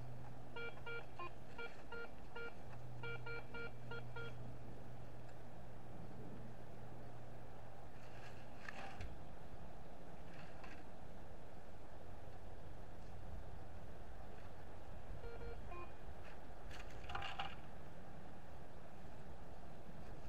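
Metal detector giving a run of short beeps for about four seconds as its coil is swept over a target, over a low steady hum. It is a signal the detectorist judges not terribly good, and it comes from crumpled aluminum trash. Later come a few short scrapes of a plastic sand scoop digging into the soil, and another brief group of beeps.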